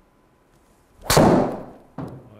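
TaylorMade SIM MAX driver's titanium head striking a golf ball: one sharp, loud crack about a second in, trailing off over half a second.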